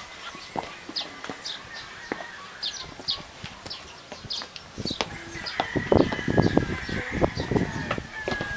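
Birds chirping in short, high calls repeated every half second or so, with a run of knocks and clatter in the last few seconds.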